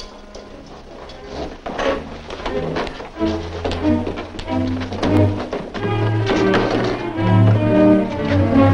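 Orchestral film score, quiet at first, then swelling from about three seconds in with held low notes moving in steps. A few thunks sound in the first half.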